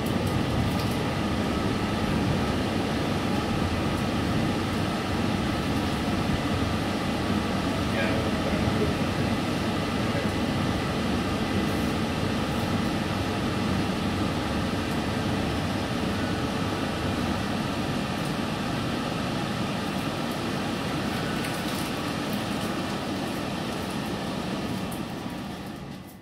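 Interior running noise of a London Overground Class 378 Electrostar electric train: a steady rumble of wheels on rail and traction equipment that slowly gets quieter as the train draws into a station, then fades out at the end.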